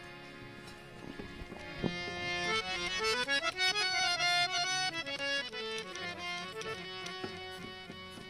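Harmonium playing a melodic phrase over held notes, the run climbing to a peak and falling back, loudest through the middle.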